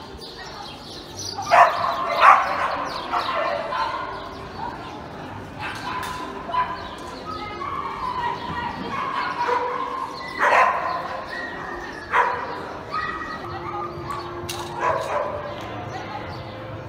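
A dog barking in short sharp calls during an agility run, loudest twice early on and again twice in the second half, with a person's voice calling out alongside.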